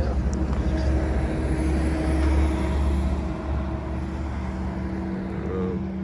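Low engine rumble of a motor vehicle passing on the street, swelling to its loudest about two seconds in and then fading.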